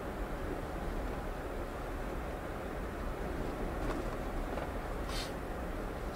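Steady low rumble of a Tesla electric car rolling slowly over a snow-covered road, heard from inside the cabin.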